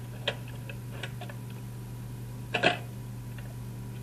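A steady low hum with a few small clicks and ticks over it; the loudest click comes a little past the middle.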